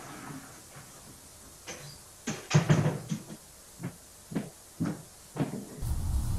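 A scattering of short knocks and bumps, about seven in four seconds, the loudest cluster about halfway through.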